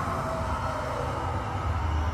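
A steady low rumble with a noisy haze above it, from the pirate dark ride's sound-effects soundtrack.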